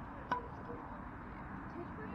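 Faint background voices with one sharp clack and a short ring about a third of a second in.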